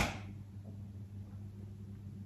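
A single sharp tap or click right at the start, fading within a fraction of a second, then a steady low hum of room tone.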